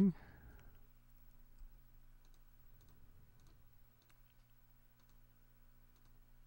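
Faint, scattered computer mouse clicks over a steady low hum.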